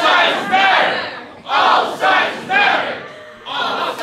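A group of voices shouting a protest chant in unison, about six short shouts in a rough rhythm.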